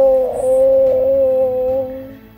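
A single long, steady, high-pitched vocal cry, held on one note and fading out at the end.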